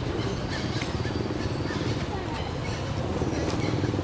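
A steady low engine rumble with an even pulse, as of a motor vehicle running nearby, with faint scattered ticks above it.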